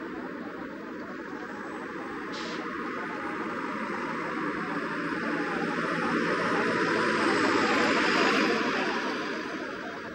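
A steady rushing noise, with a short high click about two seconds in. It swells to its loudest about eight seconds in, then fades.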